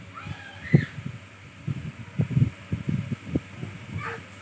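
Irregular low, dull thumps and knocks, the loudest just before the one-second mark. A brief high-pitched child's vocal sound comes in the first second.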